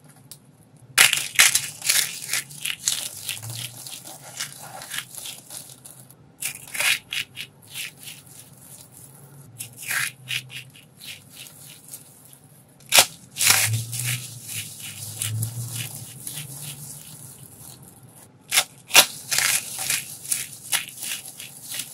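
Dried, starch-coated soap shavings and curls being crushed and crumbled between the hands: a run of irregular dry crunches and crackles. The loudest crunches come about a second in, about two-thirds of the way through, and near the end.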